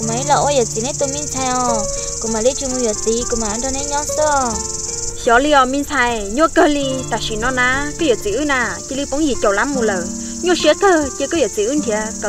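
A steady, high-pitched chorus of insects chirring, changing in level about five seconds in, behind a woman talking and soft sustained background music notes.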